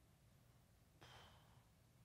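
Near silence with one soft breath into a desk microphone about a second in, lasting under half a second.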